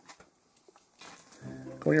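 A few faint clicks as fingers work a small plastic two-pin wire connector into the socket of a model's LED circuit board, with a man's voice coming in near the end.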